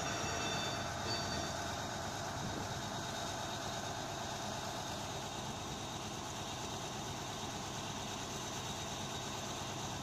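Engines of heavy tracked vehicles running steadily as an even drone, with a few faint high tones in the first second or so.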